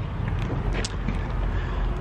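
Handling noise from a handheld camera being swung around: a steady low rumble with a few light clicks and rustles.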